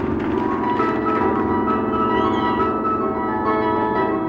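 A band's keyboards open a song live with sustained, bell-like notes; held higher tones come in about a second in.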